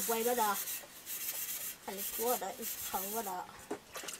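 A hand rubbing and scrubbing a metal plate, a steady scratchy hiss, with a woman's voice in drawn-out notes over it twice.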